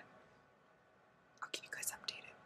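Near silence with faint room tone, then a woman whispering a few short breathy syllables about a second and a half in.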